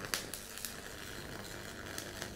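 Electric arc welding: the arc strikes right at the start and then crackles and sizzles steadily.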